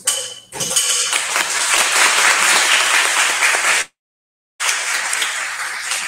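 Audience applauding, a loud, dense clatter of clapping. About four seconds in it cuts to silence for under a second, a dropout in the live stream's audio, then carries on a little softer.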